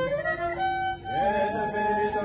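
Music carried by a violin: a slow melody of long held notes that slide from one pitch to the next.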